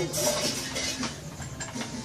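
Dishes and cutlery clattering as they are washed by hand at a kitchen sink.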